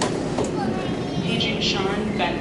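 Airport baggage carousel running with a steady rumble and a few clacks, under the chatter of people waiting around it.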